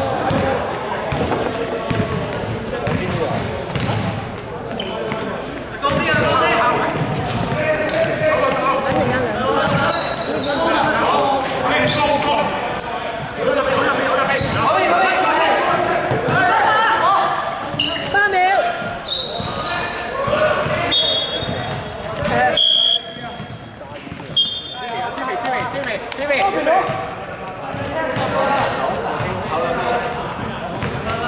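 Basketball bouncing on a hardwood court during play, with indistinct voices of players and onlookers calling out, echoing in a large sports hall.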